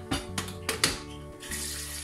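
Background music with a few short knocks in the first second, then a steady hiss that starts about one and a half seconds in.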